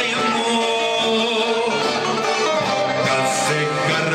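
Live dance music: a voice singing held notes over plucked string instruments, playing without a break.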